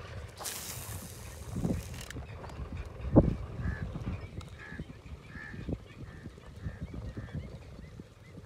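A cast with a spinning rod: line hisses off the reel for under two seconds, then a single heavy thump comes about three seconds in. Faint calls repeat about once a second through the rest, over a low rumble.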